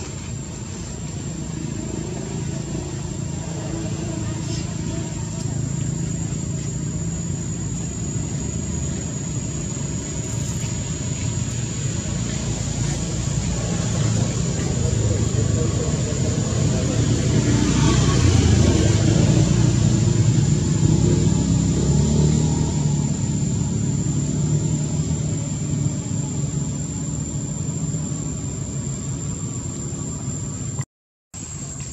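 A motor vehicle's engine rumble, swelling to its loudest about two-thirds of the way through and then fading, as if passing slowly close by.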